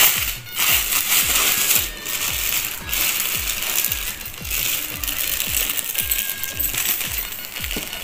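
Bundled gold-toned bangles clinking and jingling as they are handled, with plastic packaging crinkling. Background music with a steady low beat runs underneath.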